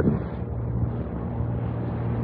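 Steady low hum with faint hiss: the background noise of an old 1940s radio broadcast recording, heard in a pause between lines of dialogue.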